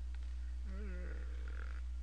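A man's brief wordless vocal murmur, a rising-then-falling hum lasting about a second, starting a little under a second in, over a steady low electrical hum.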